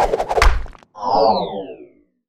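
Logo-animation sound effects: a heavy boom about half a second in, then after a short gap a falling, pitched sweep that fades out.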